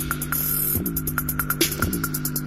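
Small JBL-badged portable speaker playing bass-heavy electronic music as a bass test: a steady deep bass tone, with bass notes that slide down in pitch about once a second under fast ticking hi-hats.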